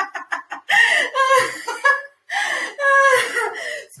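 A woman laughing loudly and deliberately in a laughter-yoga exercise: a quick run of short ha-ha bursts at the start, then two long drawn-out laughs with a brief break between them.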